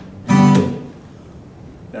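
A single hard strum on an acoustic guitar about a third of a second in, the chord ringing out and fading over about a second. It stands in for the gunshot in the story.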